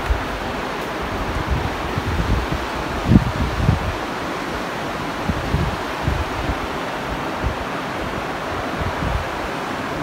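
Wind blowing over the microphone: a steady rushing noise with irregular low gusts, the strongest about three seconds in.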